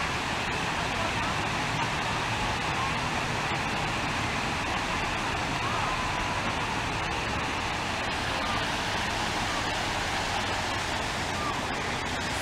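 Steady rushing and splashing of an artificial waterfall on a mini golf course, even in level throughout, with faint voices in the background.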